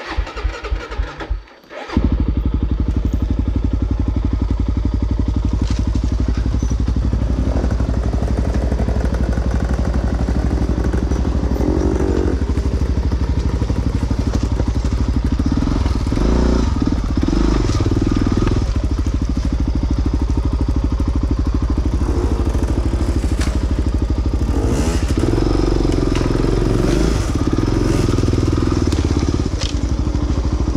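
Dirt bike engine starting: a few short sputters in the first two seconds, then it catches and runs continuously, its revs rising and falling.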